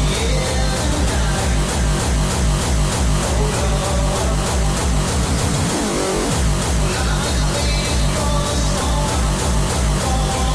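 Hardcore DJ mix: a fast, heavy electronic kick drum pounding in a steady rhythm under synth lines. The kick breaks off briefly about six seconds in, then comes straight back.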